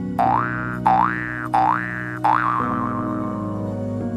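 Cartoon 'boing' sound effect over background music: three quick rising springy glides in a row, then a fourth that wobbles and dies away.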